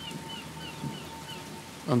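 Faint background rainforest ambience: a soft, rain-like hiss with a series of short, high chirping calls and a thin steady hum beneath.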